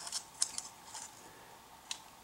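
Faint handling clicks of thin wire being wrapped by hand around a hook and the two wire strands: a few scattered ticks, the sharpest near the end.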